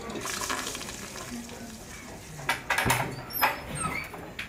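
A steady rushing noise, then a quick cluster of sharp clicks and knocks past the halfway point as a door is unlatched and swung open.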